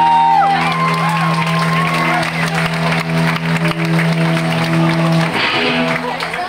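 Live punk rock band: an electric guitar chord held and ringing steadily, with shouting voices over it, until it stops about five seconds in.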